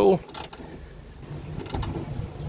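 Hand ratchet with a 10 mm socket clicking as the badge bolt is snugged up only lightly: a click about half a second in and a quick run of clicks near the end.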